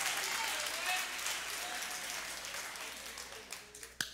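Congregation applauding in a large hall, the applause dying away toward the end.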